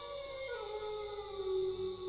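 A long, drawn-out howl in the background: one pitched tone that slides down in the first second, then holds steady.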